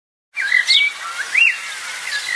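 Small bird singing: a few short whistled phrases of chirps with quick rising and falling notes, starting about a third of a second in.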